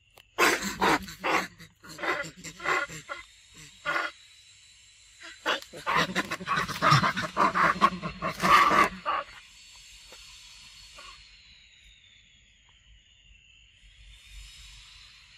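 Long-tailed macaques giving a string of short, harsh cries in two bursts, the second louder and denser about five to nine seconds in, as one chases another. A quieter stretch follows with a faint, steady, high-pitched tone.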